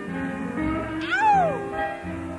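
Live band music during a keyboard solo, heard on an audience recording, with sustained chords. About a second in, one loud note bends up and then slides down about an octave.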